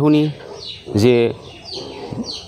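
Birds chirping in the background, short high falling calls about once a second, under two brief bursts of a man's speech.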